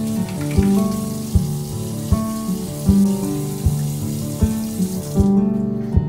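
Strummed acoustic guitar music with a steady beat, over water running from a kitchen tap into a sink; the water stops about five seconds in.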